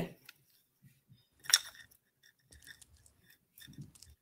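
A single sharp click about a second and a half in, among a few faint ticks and rustles, as a beaded bracelet with a metal clasp is handled.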